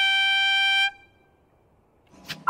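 A trumpet holding the long final note of the closing music, which stops about a second in and is followed by near silence.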